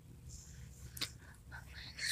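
Faint whispering over a low hum, with one sharp click about a second in.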